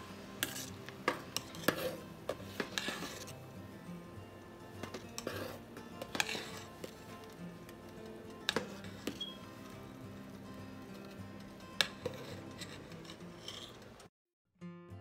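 Metal spoon stirring soy in water in a stainless steel pot, clinking and scraping against the pot's side and bottom in irregular sharp knocks every second or two. Soft background music plays underneath.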